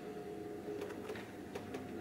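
Quiet room tone: a faint steady hum with a few soft clicks.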